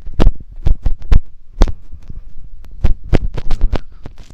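Footsteps crunching on temple gravel close to a handheld phone's microphone: irregular sharp crunches, several a second, each with a low thump.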